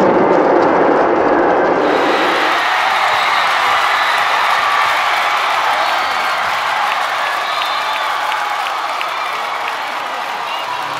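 Basketball arena crowd cheering and applauding a long buzzer-beater made at the end of the third quarter. The cheer is loudest in the first couple of seconds, then settles into a steady roar.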